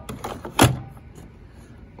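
Plastic battery pack of a Sanitaire SC7100A cordless vacuum being pushed into its slot: a couple of small knocks, then one sharp click as it latches a little over half a second in.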